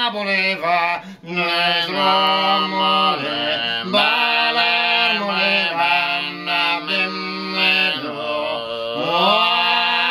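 Two men singing unaccompanied in close harmony in the old Sicilian style, holding long notes that slide and bend between pitches, with a brief break for breath about a second in.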